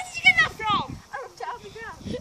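Young girls' high-pitched voices talking excitedly in short, bending bursts.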